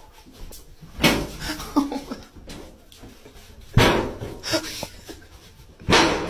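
A light swinging door banging three times as a dog pushes through it: once about a second in, again near four seconds, and once more at the end.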